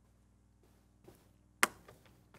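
A quiet room hush, then a single sharp tap at the lectern about one and a half seconds in, with a fainter tick just before it.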